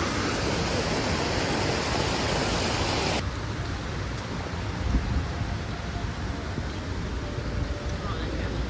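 Small cascading waterfall splashing over stacked stones into the river, a steady, even rushing. It cuts off suddenly about three seconds in, leaving a much quieter outdoor background with a low rumble.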